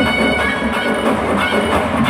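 Loud live Bollywood stage-show music played over the arena's PA, heard from within the audience.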